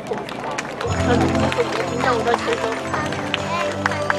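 Music from the show's loudspeakers starts about a second in with loud, held low notes, over the chatter of the waiting crowd.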